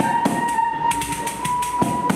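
A violin holds one long, steady note while hand percussion keeps up a rhythm of sharp strikes beneath it.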